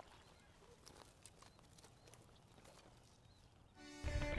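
Near silence with a few faint, scattered clicks and knocks, and a slightly sharper one right at the start. Music with steady pitched notes fades in just before the end.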